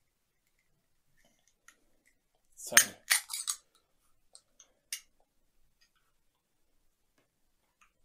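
Aluminium drink can, a 250 ml Espresso Monster Espresso and Milk, opened by its ring-pull tab: a sharp snap about three seconds in with a short hiss straight after. A few small metallic clicks from the tab follow.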